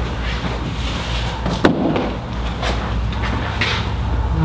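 A single sharp knock about a second and a half in, over a steady low background rumble.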